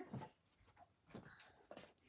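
Near silence in a small room, with a few faint, brief clicks and rustles of craft supplies being handled.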